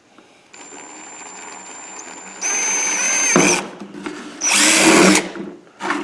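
Cordless drill boring a hole through a plastic coffee canister. It runs slowly for about two seconds, then runs at full speed in two bursts, the second one shorter.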